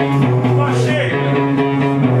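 A live rock band playing, guitar notes ringing over a steady held low note.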